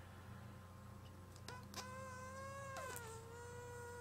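A faint, thin, steady whining tone with overtones comes in about a second and a half in after near silence, and drops slightly in pitch about three seconds in.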